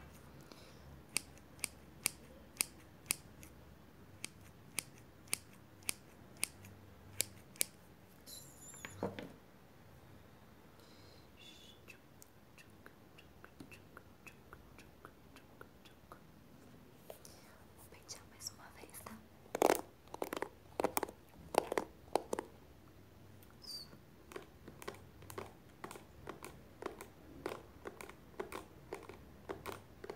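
Hairdressing scissors snipping close to the microphone in a steady run of crisp snips, about two a second, with a louder cluster of snips and handling noise a little past the middle.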